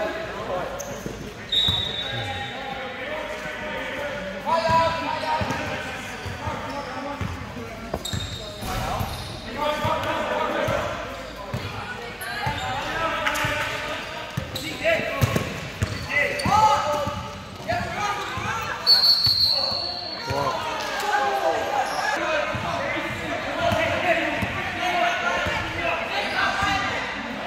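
Basketball game sounds in an echoing gym: a basketball bouncing on the hardwood court amid players' and spectators' voices, with a few short high-pitched tones.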